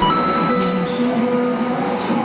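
Electronic arcade machine music, a few held tones and a simple stepping melody, over the general noise of an arcade.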